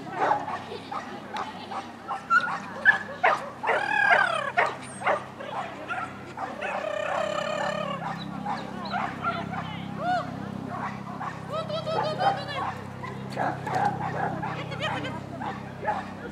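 Small dog barking and yipping over and over in short, sharp calls as it runs an agility course, with people's voices mixed in.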